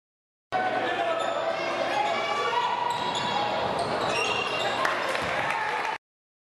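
Live game sound of a basketball game in a school gym: a ball bouncing on the court under voices and crowd noise from the hall. It starts about half a second in, after a silent cut.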